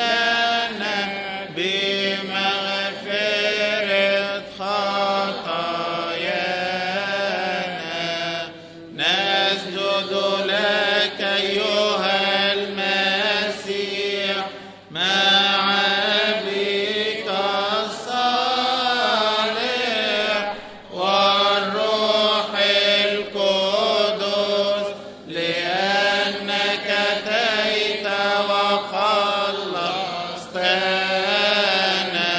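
Coptic Orthodox liturgical chant: long melismatic phrases sung to a vowel, the pitch winding up and down, with short breaths between phrases every five or six seconds.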